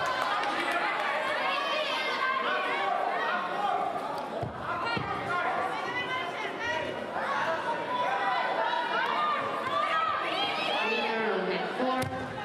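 Many voices talking at once, a steady overlapping chatter of a crowd echoing in a large sports hall.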